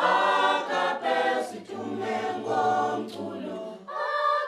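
Children's choir singing a cappella, several voices in harmony, with a low held note underneath in the middle.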